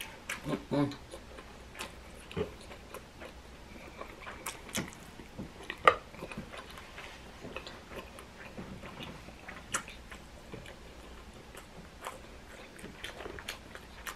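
Close-up chewing and mouth sounds of someone eating, with a short hummed "mm" near the start and scattered small wet clicks, the sharpest about six seconds in.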